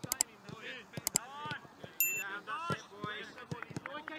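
A football struck firmly in a quick passing drill: sharp kicks, two quick pairs near the start and about a second in, then lighter touches, among players' shouts.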